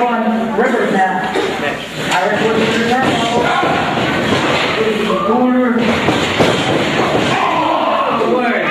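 People's voices talking and shouting over a pro wrestling match, with thuds of bodies hitting the ring mat, the sharpest about six and a half seconds in.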